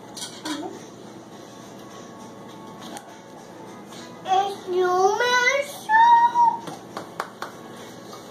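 A young child singing a short wordless tune in high, sliding notes, from about four seconds in until nearly seven seconds, followed by a few light clicks.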